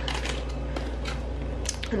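A few light clicks and taps of tarot cards being handled, over a steady low hum.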